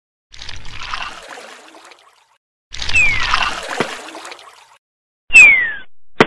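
Three swishing title sound effects about two seconds apart, each a short noisy rush. The second and third each have a falling whistle in them; the third is the loudest and cuts off sharply near the end.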